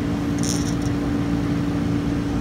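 A steady machine hum with a constant low tone, and about half a second in a brief light metallic jingle as a hand-held crankbait lure is turned in the fingers.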